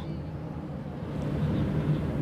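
Low, steady outdoor background rumble with no distinct event, in a pause between commentary.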